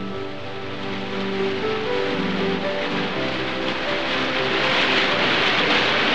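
Music of slow held notes mixed with the rush of a waterfall, the water growing louder toward the end.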